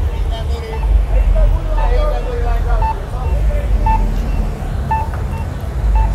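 Busy city street at night: a low rumble of slow, heavy car traffic, with passers-by talking in the first half. A short beep repeats about once a second.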